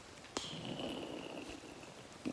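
Trekking pole tip clicking once against the trail, followed by a faint, steady high-pitched note lasting about a second and a half.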